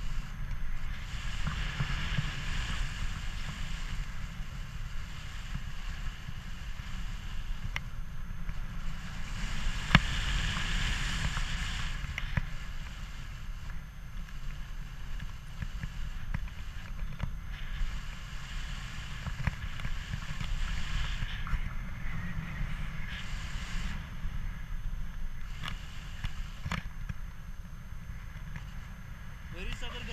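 Wind buffeting the microphone of a camera held out from a tandem paraglider in flight: a steady low rumble with a hiss that swells and fades every several seconds as the airflow changes. A single sharp click about ten seconds in.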